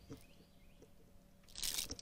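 Quiet handling of a landed largemouth bass on fishing line: faint scattered clicks and ticks, then a short hissing burst near the end as the fish is gripped by the lip.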